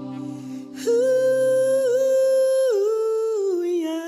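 The end of a worship song: a single voice hums a slow wordless line of long held notes, stepping down in pitch twice, after the backing chord fades out at the start.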